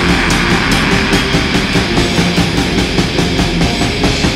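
Black metal recording playing loud and dense: distorted electric guitars over fast, evenly spaced drum hits, with no break.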